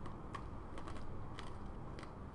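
A handful of light clicks from the presentation computer's controls as lecture slides are advanced, about five over two seconds, over a low room hum.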